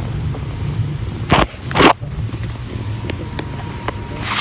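Handling noise on the camera's microphone: two short rustling bursts about half a second apart, the first about a second and a half in, over a steady low hum.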